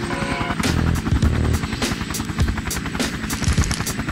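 Helicopter rotor chopping in a fast, even beat over background music.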